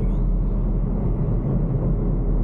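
Steady low engine and road rumble inside the cabin of a Suzuki S-Presso with a 1.0-litre three-cylinder engine, cruising at about 54 km/h on light throttle.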